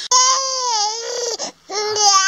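Young infant crying: a long wail, a short breath, then a second wail beginning near the end. It is a hungry cry after a bottle that was not enough milk.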